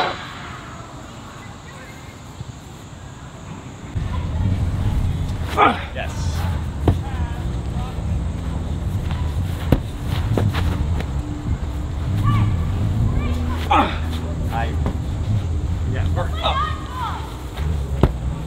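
A medicine ball being thrown and caught on a grass lawn, with a couple of dull knocks, mixed with short shouts and grunts over a steady low hum.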